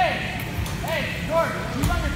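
Wheelchair tyres squeaking on a hardwood gym floor as players turn, a series of short rising-and-falling squeaks, with a low thump near the end.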